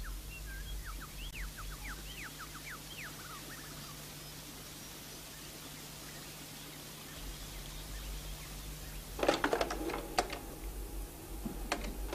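Small forest bird calling: a quick run of about a dozen short, arching chirps over the first three seconds, then quiet with a steady low hum. About nine seconds in comes a brief burst of sharper sounds.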